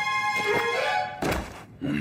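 Cartoon soundtrack: background music with a short comic sound effect, then a dull thunk a little past the middle, after which the sound briefly drops away almost to nothing.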